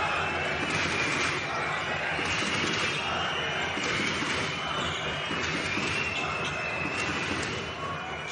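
Steady arena crowd noise at a basketball game, with a basketball being dribbled on the hardwood court.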